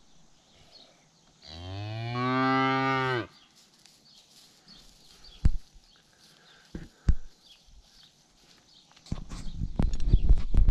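A cow moos once: a single call of about two seconds that rises and then falls in pitch. A few sharp clicks follow, and rough, crackling noise starts near the end.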